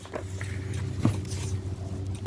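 Low rumbling handling noise from the phone and book being moved close to the microphone, with a single click about a second in.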